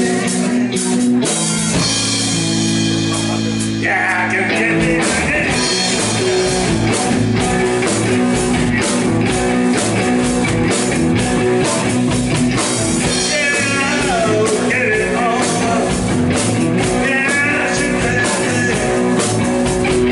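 Live rock band playing: electric guitar, electric bass and drum kit, with the drums keeping a steady beat.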